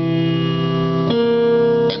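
Piano notes of a C dominant chord sounded one at a time and held, a new note (B flat) joining the sustained ones about a second in.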